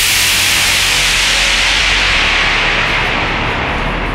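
A burst of white noise used as a DJ transition effect between tracks, starting suddenly and fading over about four seconds as its top end falls away, with a low bass hum under it.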